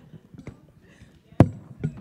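Handheld microphone being handled as it is taken off its stand, picked up through the PA as sharp knocks: a faint one about half a second in, a loud one about a second and a half in, and another just before the end.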